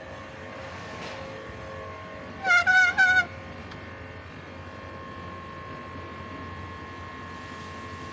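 Steady background noise of a bicycle ride along a waterfront promenade, broken about two and a half seconds in by three short, loud, wavering pitched calls in quick succession.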